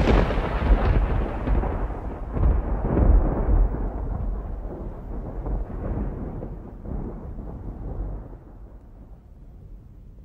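Rolling thunder: a deep rumble with a few sharp crackles in its first few seconds, swelling again about three seconds in, then slowly dying away.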